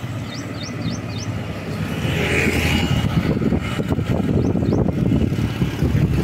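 Road traffic passing, a motorcycle among it, as a steady low rumble that grows louder about two seconds in. Four short high chirps come in quick succession early, and two more near the end.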